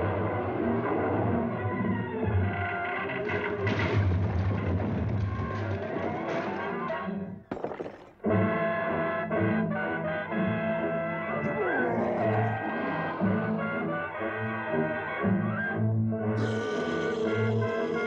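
Dramatic orchestral score led by brass, cutting out briefly a little under halfway through and then resuming.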